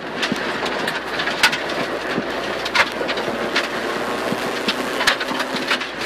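Rally car's engine running hard, heard from inside the cabin over a steady rumble of tyre and gravel noise. Sharp ticks of stones striking the car are scattered throughout.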